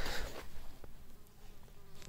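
A flying insect buzzing faintly, a steady low hum that comes in about halfway through.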